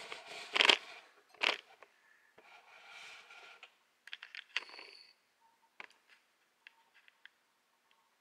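Handling noise as a camera is moved in close to a small engine: a sharp knock in the first second, another click just after, a scraping rub, then scattered light clicks and taps. A faint, thin steady tone runs through the last second or two.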